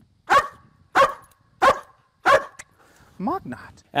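Belgian Malinois barking four times, sharp single barks about two-thirds of a second apart, followed near the end by a shorter sound with a gliding pitch.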